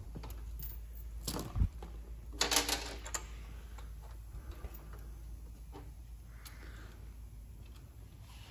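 Scattered light clicks and taps of ATV parts and hardware being handled, with a sharper knock and a dull thump at about a second and a half in, over a steady low hum.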